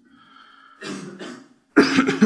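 A man coughing into his hand, twice: a softer cough about a second in and a louder one near the end.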